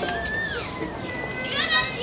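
Young children's voices chattering and calling out, high-pitched, with a couple of sharp clicks.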